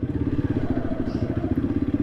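Honda CRF300 motorcycle's single-cylinder engine running at low revs as the bike rolls slowly, with a steady, rapid, even pulsing.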